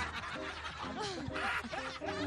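A person laughing: short snickering laughs whose pitch slides up and down.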